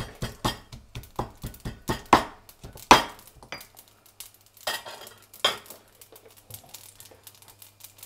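Stone pestle pounding in a black stone mortar, crushing garlic cloves: sharp knocks about three a second, then two more spaced-out knocks about five seconds in before it stops.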